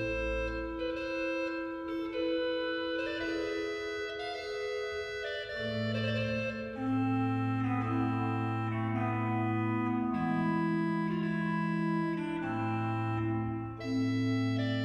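Organ playing a slow Baroque largo in long held chords, with low bass notes joining about five seconds in.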